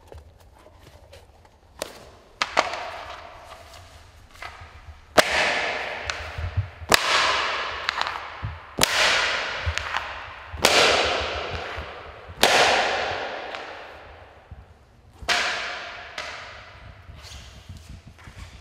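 A series of about nine sharp, loud cracks or slaps, irregularly spaced one to three seconds apart, each ringing out in a long echoing decay in a large stone hall.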